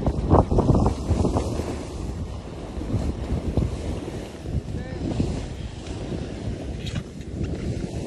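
Wind rushing over the microphone while moving fast downhill, mixed with the hiss and scrape of riding over packed groomed snow.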